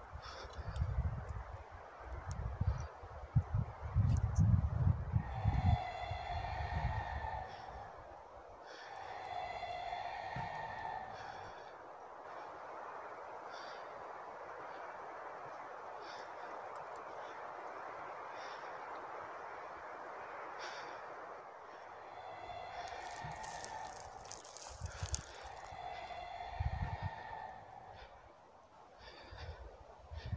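Screams of an unseen creature in the woods: four drawn-out, high, fairly steady calls in two pairs, each lasting a second or two. Over them, a frightened person breathes fast and heavily close to the microphone, with rumbling from the phone being handled.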